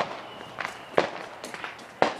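Several short, sharp clicks and knocks, the loudest about halfway through.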